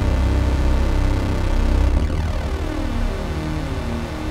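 Experimental electronic music synthesised in SunVox, with a heavy pulsing low bass under layered tones. In the second half, sweeps fall in pitch.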